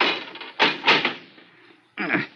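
Radio-drama sound effect of a heavy safe door being pulled open: a sudden clunk, then two more clunks just over half a second in, dying away after about a second and a half.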